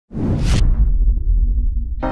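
Logo-reveal whoosh sound effect: a sudden deep boom with a short bright hiss about half a second in, then a low rumble that dies away.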